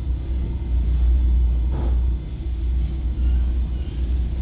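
Wind rumbling on a handheld camera's microphone: a steady low rumble, with a faint brief sound about two seconds in.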